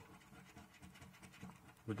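A coin scraping the scratch-off coating of a paper scratchcard: a rapid run of short, faint scraping strokes.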